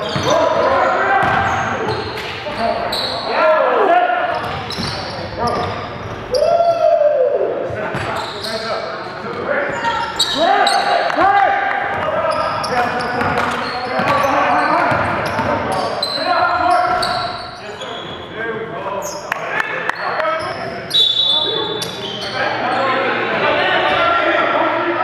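Live basketball game in a gym: the ball bouncing on the hardwood floor, short sneaker squeaks and indistinct player shouts, all echoing in a large hall.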